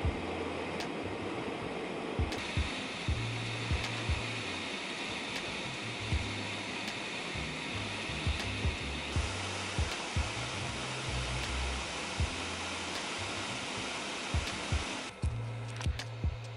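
Steady rushing noise of a jet airliner cabin in flight, under background music with low bass notes changing about every second and light clicking percussion.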